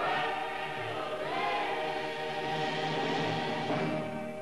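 Closing film-score music: a choir singing long held chords with orchestra, the chords sliding up into a new swell about a second and a half in.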